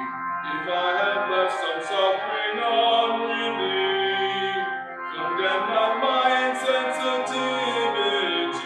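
Voices singing a hymn in sustained, slow-moving notes.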